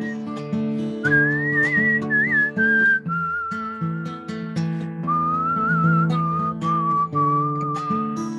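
A man whistling a wavering melody that stands in for a harmonica part, over a strummed acoustic guitar.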